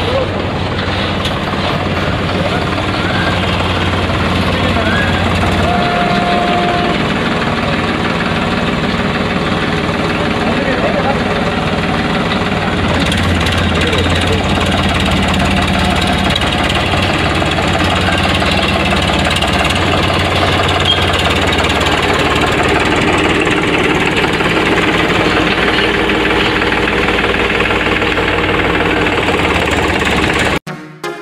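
A vehicle engine idling with a steady low hum, under continuous crowd chatter.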